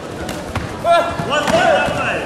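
Short sharp squeaks and thuds from the fighters' feet and kicks on the taekwondo competition mat during a fast exchange of kicks, a cluster of squeaks about a second in and again near the end.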